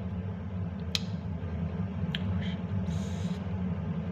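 A person eating spicy noodles between words: a few sharp mouth clicks, about one and two seconds in, and a short breathy hiss near three seconds, over a steady low hum.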